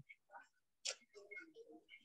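Near silence over a video-call line, broken by a few faint short clicks, the sharpest about a second in.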